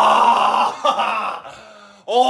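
A man groaning loudly: one long, held groan that ends a little under a second in, then a shorter one. It is the groan of an over-full stomach after drinking too much water.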